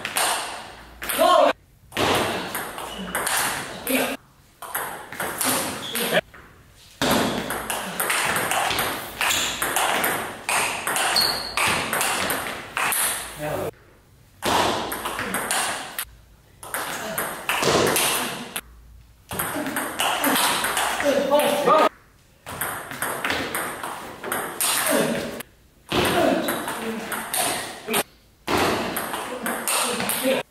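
Table tennis ball in play: a rapid series of sharp clicks as the celluloid ball is struck by rubber paddles and bounces on the table, point after point.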